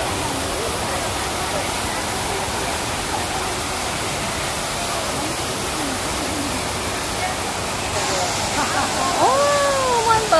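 Steady rush of water falling from the top of a pool wall into shallow water, with voices chattering faintly over it; near the end a voice calls out louder.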